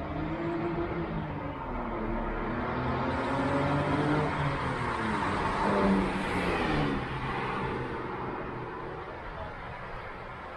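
A motor vehicle's engine passing by on the street, its pitch rising and falling as it changes speed, growing louder to a peak about six seconds in and then fading.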